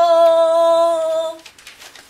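A woman's voice singing one long held note, steady in pitch, that stops about a second and a half in, followed by a few soft clicks.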